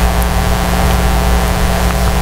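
Steady electrical hum and hiss from the sound system or recording chain, with a strong low mains hum and a fainter buzz above it. Nothing changes or stops.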